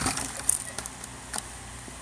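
A few soft clicks and taps of something being handled, over a low steady background.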